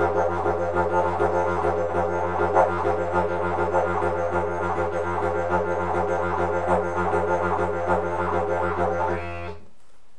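Didgeridoo playing a low, steady drone with a rolling rhythm: quick, even pulses of shifting overtones over the held tone. It stops shortly before the end.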